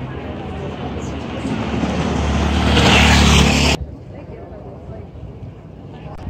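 A motor vehicle passing close, its engine and road noise growing louder over about two seconds, then cut off abruptly a little before four seconds in.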